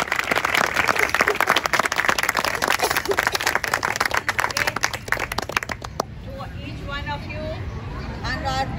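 Audience of parents applauding with dense hand-clapping, which stops fairly abruptly about six seconds in. Voices follow near the end.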